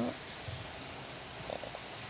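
Faint steady background hiss in a pause between spoken words, with a soft low thump about half a second in.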